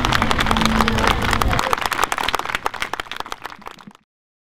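Crowd applauding. A voice holds a pitched note over a low rumble for the first second and a half. The clapping then thins and fades out to nothing at the very end.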